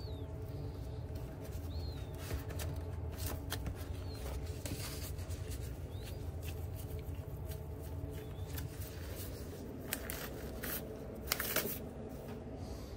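Rustling paper and light clicks as gloved hands separate raw beef patties from their paper sheets in a plastic tray, over a steady low kitchen machine hum, with a few short high squeaks. Louder rustles near the end as a disposable glove is pulled off.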